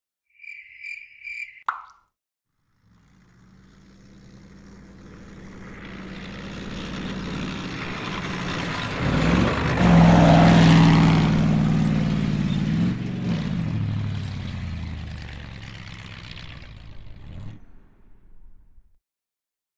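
Three short high chirps, then a single water-drop plop about two seconds in. A bulldozer's diesel engine then runs in, growing louder to a peak about ten seconds in with its pitch rising and falling, and fades away near the end.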